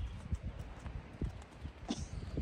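Miniature donkeys' hooves stepping and scuffling on packed dirt as they tussle around a large ball: irregular, soft low thuds.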